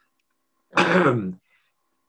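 A man clearing his throat once, a short voiced rasp of just over half a second, about three quarters of a second in.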